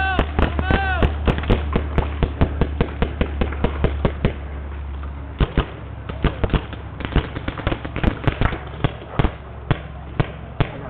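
Paintball gunfire: markers firing many sharp, irregular shots in quick succession. Two short shouted calls near the start.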